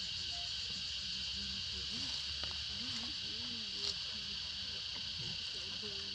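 Steady high-pitched chorus of insects trilling, with one sharp click about four seconds in.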